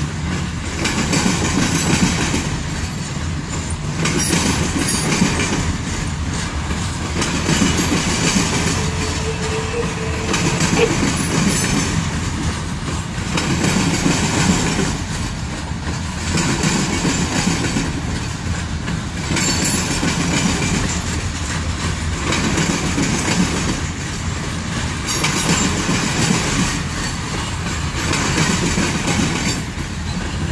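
Freight train of covered hopper cars rolling past, steel wheels clattering over the rail joints in a continuous loud rumble that swells and eases every few seconds.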